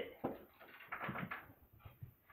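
A dog eating treats off a carpet and nosing about: soft, scattered clicks and scuffs, clustered about a second in.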